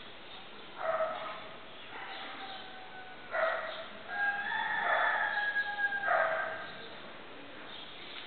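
Animal calls: a short pitched call about a second in, then a longer, drawn-out series of calls from about three to seven seconds in.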